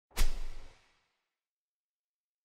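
An intro sound effect: a single sudden whooshing hit, heard once, that fades away within about half a second.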